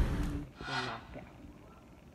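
A woman's soft, breathy voice saying a couple of words with a sigh-like exhale, then a quiet room for the second half.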